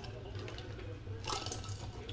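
Low-level room noise between remarks: a steady low hum with a faint hiss that grows a little stronger about halfway through.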